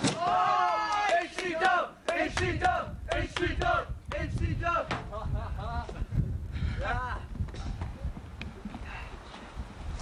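Young men whooping and yelling excitedly, several voices at once and loudest in the first two seconds. A sharp crash comes right at the start as a body is driven through a wooden board.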